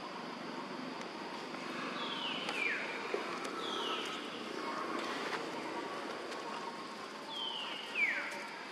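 Three short, high animal calls, each falling steeply in pitch, about two, four and seven seconds in, over a steady outdoor background hiss.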